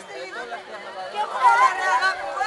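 Several young people's voices talking and calling out over one another, loudest about one and a half seconds in.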